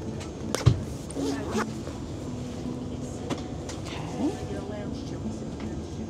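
A fabric amenity pouch being handled and opened, with a few sharp knocks, the loudest about 0.7 s in, over the steady cabin noise of an Airbus A330-300.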